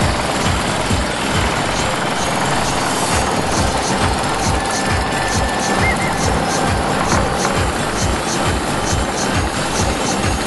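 Motorboat engine running steadily at speed, heard from on board, with a rapid low pulsing throb.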